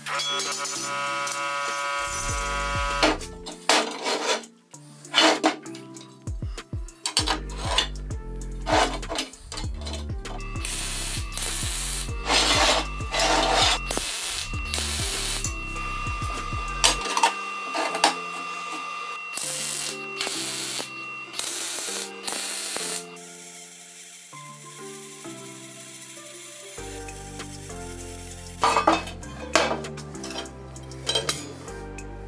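Background music over metalworking sounds: a hammer striking a steel box section, with many sharp metallic knocks and clanks scattered through.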